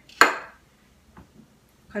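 A sharp knock on a wooden cutting board just after the start, then two faint taps a little after a second in, as a lemon and a kitchen knife are picked up and handled.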